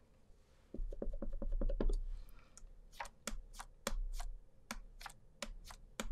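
Foam ink pouncer tapped repeatedly on an ink pad and a stencil over card. A quick run of soft dabs comes about a second in, then a steady series of sharper taps, about three a second, through the second half.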